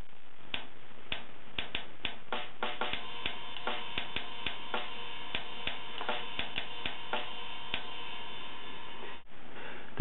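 A metronome app's rock drum loop at 100 BPM, played through a phone's small speaker: a dry kick, snare and hi-hat beat that stops shortly before the end.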